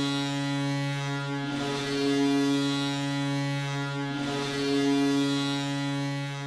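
Hockey arena goal horn sounding one long, steady, low blast over a cheering crowd, signalling a home-team goal.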